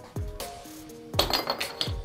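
Glass beer bottle knocking and clinking on a game table: one knock just after the start, then a quick run of clinks about a second in. Background music plays throughout.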